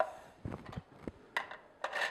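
A few light, separate clicks and knocks of hard plastic juicer parts and hands on a countertop as the juicer is handled and assembled.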